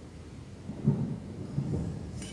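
Low, muffled thuds and rumbling from objects being handled and set down on a wooden altar table, with the loudest thud about a second in and a few more near the end.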